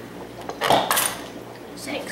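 The Pop-O-Matic die popper of a Trouble board game being pressed: a sharp plastic pop with the die clattering inside the dome, about two thirds of a second in, and a lighter click near the end.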